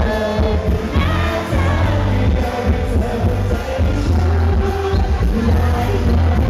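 A male singer sings a pop song live into a handheld microphone over loud amplified music with a strong, steady bass.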